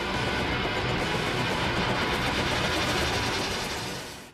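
Dense, driving action-film score with a steady low pulse, from the soundtrack of the film clip.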